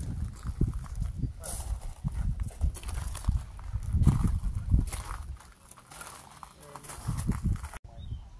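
Footsteps on gravel, irregular knocks, with people talking in the background.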